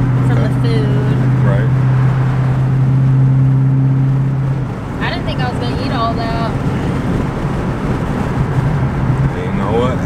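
Cabin drone of a 2020 Dodge Charger Scat Pack's 6.4-litre 392 HEMI V8 cruising at a steady road speed, over tyre and road noise. The low, steady hum drops away a little before halfway through, leaving the road noise.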